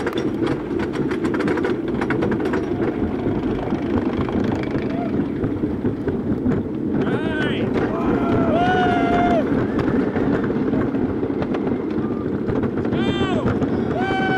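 A CCI wooden roller coaster train running flat out over its wooden track, heard from the front seat as a loud, steady rumble and rush, with rapid clatter in the first couple of seconds. From about seven seconds in, riders yell in short rising and falling bursts, several times.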